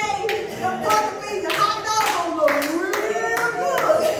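Hand claps, roughly one to two a second, over a voice calling out with sweeping pitch that dips low and rises again in the middle.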